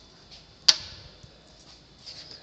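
A single sharp tap, about two thirds of a second in, as a small craft piece is set down on a wooden workbench.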